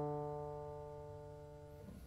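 Grand piano bass note, the last of a short stepping-and-skipping bass line, ringing and slowly fading. It is damped shortly before the end.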